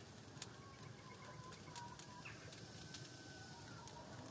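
Faint ambience: scattered sharp crackles from the wood fire under the pot, and faint, thin bird calls in the background, one held and slowly falling near the end.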